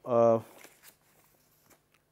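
A man's drawn-out hesitation sound 'uh', then a pause with only a few faint small clicks and rustles.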